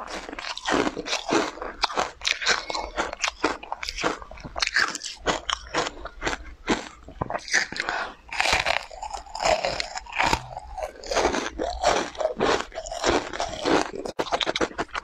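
Close-miked eating of a matcha-powder-coated dessert: a bite and steady chewing, a rapid run of short wet crunching mouth sounds, several strokes a second.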